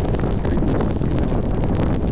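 Wind buffeting the microphone: a loud, steady rumble with crackling flutter.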